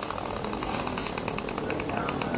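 A rapid, even mechanical rattle of about ten short pulses a second over steady background noise.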